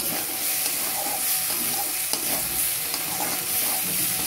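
Prawns in a thick coconut and spice masala frying and sizzling in a metal kadai, a spatula stirring and scraping through the paste with small scattered clicks.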